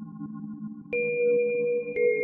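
Ambient electronic music on a software synthesizer: a held, layered drone, with a new bell-like tone struck about halfway through and sustained, making it louder.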